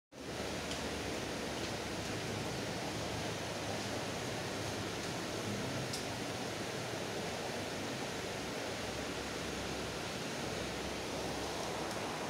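Steady rushing hiss of aquarium aeration: air bubbling from airstones and sponge filters, with a faint click or two.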